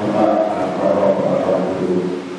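A man's voice chanting a long, held melodic line into a microphone, amplified through a PA, starting loud at once.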